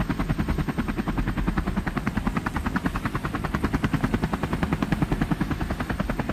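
Helicopter overhead, its rotor beating in a fast, steady chop of roughly a dozen beats a second.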